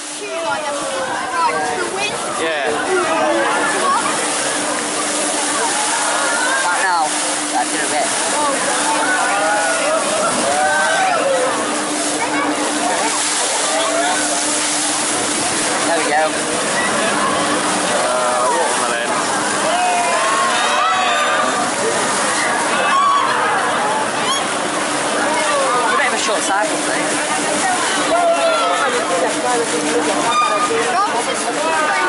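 Many riders screaming and shouting together as a Huss Top Spin ride swings and flips its gondola, over the steady rush of the ride's water jets. A steady low hum underneath stops about 18 seconds in.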